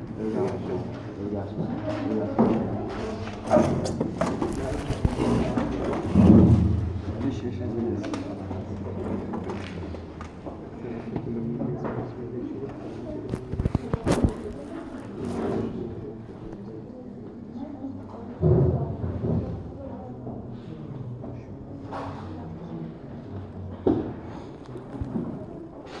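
Indistinct talking in a room, too unclear to make out, with a few low thumps and a sharp knock, the loudest thump about six seconds in.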